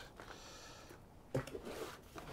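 Faint rustle of hands brushing potting compost over seeds in a plastic cell tray, with a short soft scrape about a second and a half in.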